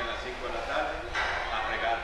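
A man speaking Spanish; speech only.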